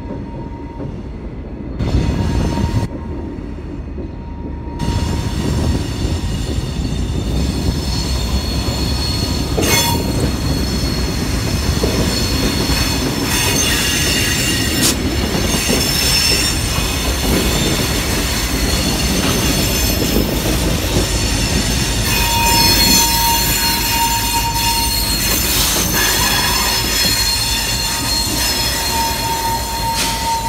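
Canadian Pacific diesel locomotives passing close by, their engines rumbling, louder from about five seconds in as they draw level. Steel wheels squeal on the rails in thin, high tones that come and go, strongest in the second half.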